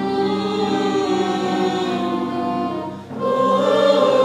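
A stage ensemble singing slow, held choral chords together. The sound drops out briefly about three seconds in, then a new, louder chord begins.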